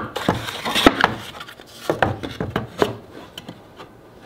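Handling of a drilled plywood board and a steel Forstner bit: a run of light wooden knocks and clicks with scraping, as the bit's shank is pushed against a hole that is too tight for it. The knocks thin out near the end.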